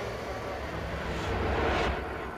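A low rumbling noise that swells about a second and a half in and falls away near the end, like a vehicle or aircraft passing.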